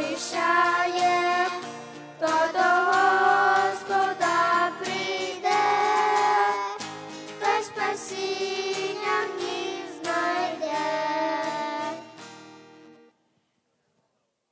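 Small children singing a song into microphones, accompanied by an acoustic guitar. The song ends about twelve seconds in and fades out to silence.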